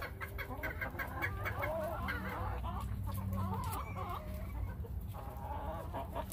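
A flock of backyard hens clucking: a quick run of short clucks in the first second or two, then softer wavering calls from several birds.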